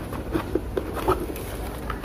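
A cardboard box being opened by hand, with light, irregular scraping and rustling of cardboard and plastic wrapping.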